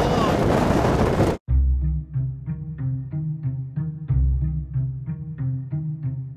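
Wind buffeting the microphone, cut off abruptly about a second and a half in. Background music follows: quick, evenly spaced notes over a steady bass line.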